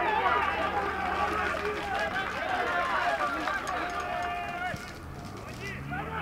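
Several voices shouting and calling over one another: footballers and onlookers at a match, loudest at the start and thinning out about five seconds in.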